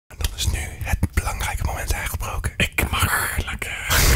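A person whispering, breathy and broken up every fraction of a second.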